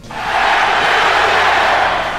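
Crowd cheering sound effect: a loud, steady roar of many voices that starts abruptly.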